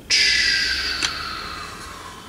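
Wooden puzzle pieces scraping and knocking against each other as a hand sorts through the pile. The scraping fades away, with a single light click about a second in.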